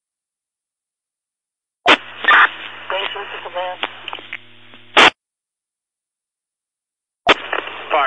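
Fire-department radio traffic over a scanner: a sharp squelch burst at key-up about two seconds in, a few seconds of faint, garbled radio voice over a steady hum, and a second burst as it unkeys. After a stretch of dead air, another transmission keys up with a burst and a voice begins near the end.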